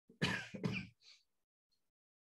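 A person clearing their throat in two quick goes, followed by a brief breath out.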